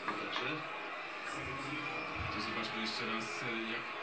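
Basketball broadcast playing from a television: arena background sound, with a commentator's voice coming in near the end.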